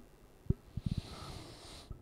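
A pause in conversation: a few soft low thumps, then a breath drawn in for about a second just before speaking.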